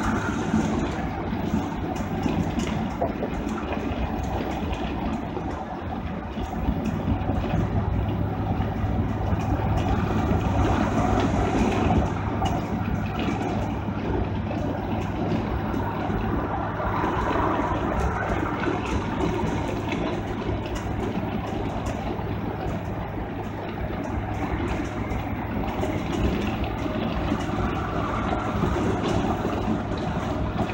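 Steady engine and road noise inside a motorhome's cab while it cruises at highway speed, a continuous low hum and rumble that swells slightly a few seconds in.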